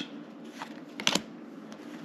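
Football trading cards being handled and slid across one another, with a few soft card flicks, two of them close together about a second in.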